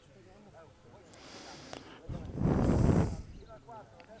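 Faint, distant shouts of young footballers calling to each other on the pitch. About two seconds in comes a loud breathy rush of noise close to the microphone, lasting about a second.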